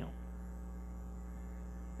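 Steady low electrical hum with no other sound.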